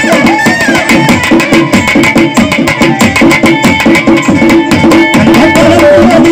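Tamil folk stage music: fast, even drumming on a barrel drum under a keyboard's steady held notes. A singer's voice comes in near the end.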